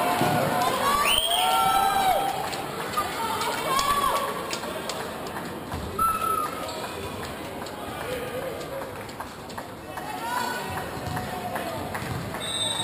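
Shouting and chatter from players and spectators echoing in a sports hall, with a loud rising shout about a second in and scattered sharp knocks.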